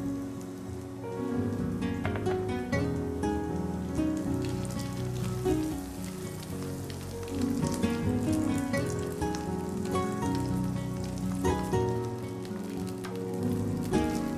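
Vegetables sizzling in a pan with a steady crackling hiss, under background music.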